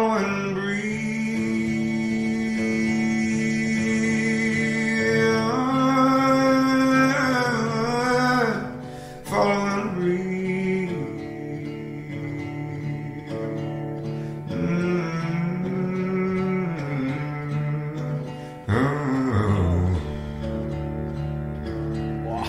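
Music: a male voice singing long, held wordless notes that bend in pitch over acoustic guitar. Near the end the voice glides down into a very deep bass note and holds it.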